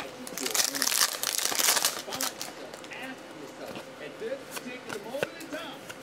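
A trading-card pack wrapper being torn open and crinkled, loudest for about the first two seconds, then softer rustling and small clicks as the cards are handled.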